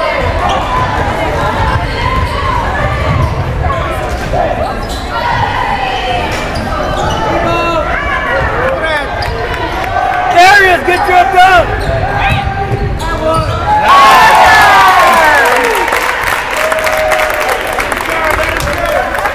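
Basketball dribbled on a hardwood gym court during live play, mixed with the voices of players and spectators echoing in the large hall, with a louder burst of voices about fourteen seconds in.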